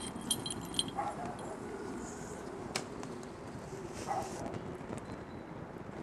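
Wood-fired hot-air Stirling engine running, a steady low mechanical noise, with a few light metallic clinks near the start and a single sharp click near the middle.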